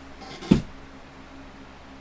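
A single short, sharp sniff about half a second in: a person snorting a pinch of nasal snuff off a small snuff spoon.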